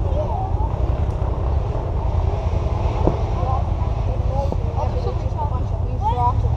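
Low, steady rumble of distant off-road racing motorcycles under faint, indistinct voices, with a single click about three seconds in.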